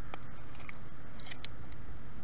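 Fingers picking through wet shingle and seaweed, giving a few small crunches and clicks over a steady background hiss.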